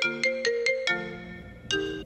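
Mobile phone ringtone: a quick run of bright, marimba-like notes that rings out and fades, then starts again with a short run of notes near the end.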